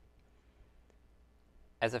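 Near silence: faint room tone with a single faint click about halfway through, then a man's voice starts near the end.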